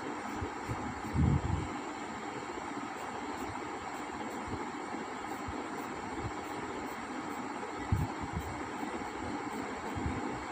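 Steady hiss of background noise, with a few short low thumps about a second in and again near the end.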